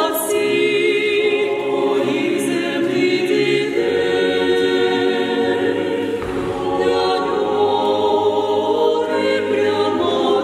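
Mixed choir singing a cappella, holding long chords that shift every couple of seconds, in the resonant acoustic of a church.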